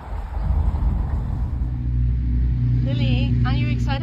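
A steady low motor hum with a few held low tones. A voice speaks during the last second.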